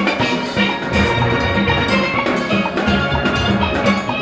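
Full steel orchestra playing a bomb tune: many steelpans struck together, from high front-line pans down to barrel bass pans, over a steady percussion beat.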